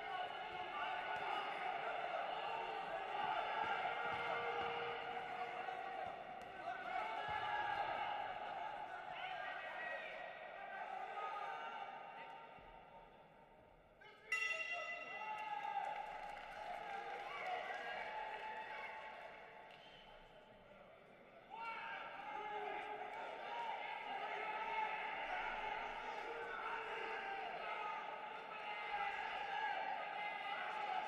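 Voices calling out in a boxing arena during a bout, with a single ringing bell strike about 14 seconds in that marks the end of the round.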